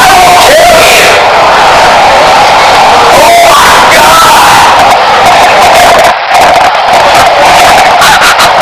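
A boy yelling and screaming, with the audio boosted and clipped into a harsh, constant distortion. The level dips briefly about six seconds in.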